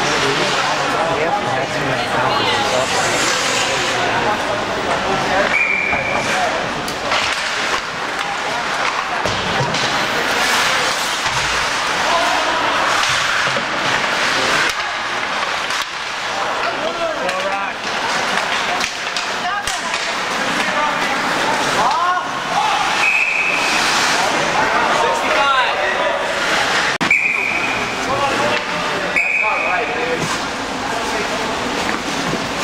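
Live ice hockey play in an echoing indoor rink: skates scraping the ice, sticks and puck clacking, and players and spectators shouting. Short, high referee's whistle blasts sound about six seconds in and several times near the end, as play is stopped for a faceoff.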